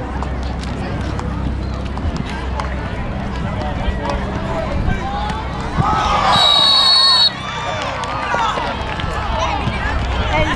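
Referee's whistle blown in one long, shrill blast about six seconds in, lasting just over a second and cutting off abruptly, over shouting voices on a football field.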